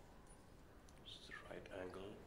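Hushed, whispered voices in an otherwise quiet snooker hall, starting a little past halfway. Faint clicks of a cue striking the cue ball and the balls colliding come just before.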